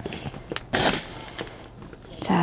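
Fine gravel top dressing poured into a plant pot over the soil: two short pours, the second and louder about three quarters of a second in.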